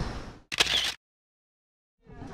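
Camera shutter click, a short sharp burst about half a second in, followed by complete silence.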